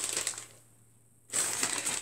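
Brown paper wrapping on a book being torn open: a sharp crackle at the start, a short pause, then about half a second of continuous rustling and tearing near the end.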